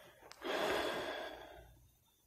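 A woman's long breath out, like a sigh, starting about half a second in and fading away over about a second.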